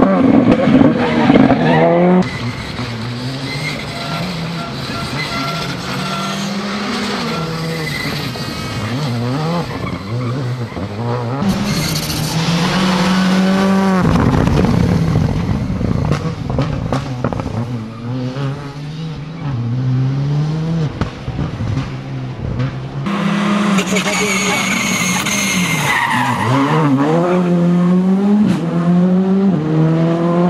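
Škoda Fabia R5 rally car's turbocharged four-cylinder engine driven hard. Its revs climb and drop sharply again and again through quick gear changes as it passes and pulls away, over a few clips joined with abrupt cuts.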